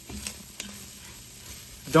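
Seasoned ground beef frying quietly in its own fat in an enameled cast-iron Dutch oven. A silicone spatula stirs and scrapes through it, with a couple of light ticks in the first second.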